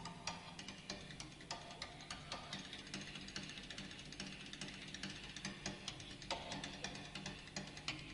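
Jazz drum kit played very softly with sticks in an unaccompanied drum solo: a quiet, irregular run of quick, light taps and clicks.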